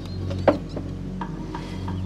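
A wooden box knocks once as it is handled and picked up, followed by a few light taps, over steady, soft background music.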